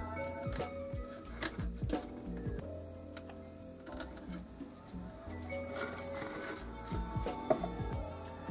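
Music played through a JBL speaker that has just been repaired, as a test of whether it works again, with a steady bass line and a regular beat.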